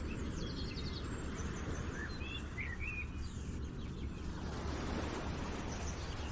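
Outdoor ambience: a steady low rumble with a few short bird chirps about two to three and a half seconds in.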